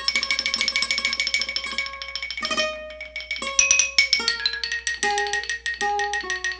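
Instrumental music: a plucked string instrument playing rapid repeated notes, then a phrase of separate notes at changing pitches.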